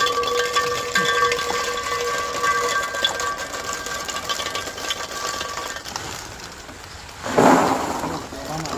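Hollow plastic ball-pit balls pouring out of a bucket and pan, clattering into a metal pan and bouncing on the floor as a dense patter of light clicks. A steady high tone runs under it for the first six seconds or so, and a louder rush of balls comes near the end.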